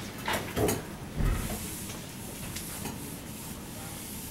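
A whiteboard eraser rubbing across the board in a soft, steady hiss, after a couple of short knocks and a low thump in the first second or so.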